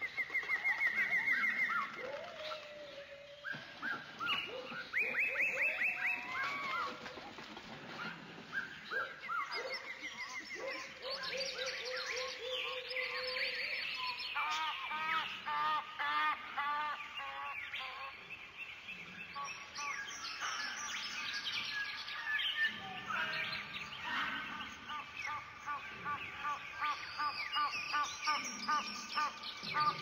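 Birds chirping and calling, many overlapping series of short repeated notes and rising and falling whistles, some in fast trills of several notes a second.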